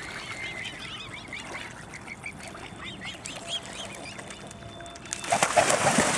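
A rapid series of short, high bird calls, then, about five seconds in, a sudden loud burst of splashing water and beating wings as two mute swans clash in a fight.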